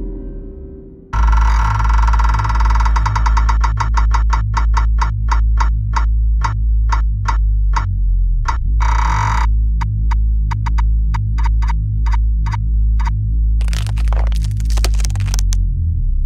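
Electronic remix of a post-metal/industrial track. A faint drone gives way about a second in to a loud, deep pulsing bass. A fast ticking rhythm runs over the bass and thins out halfway through, and a denser high, noisy passage comes near the end.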